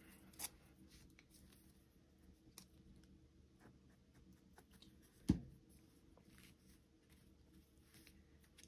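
Faint handling sounds of fabric tabs and paper envelopes on a tabletop, with light scattered ticks and rustles and one short sharp knock about five seconds in.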